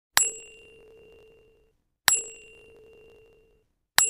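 A bell-like ding sounds three times, about two seconds apart. Each is a sharp strike followed by a ringing tone that fades away over about a second and a half, and the third comes right at the end.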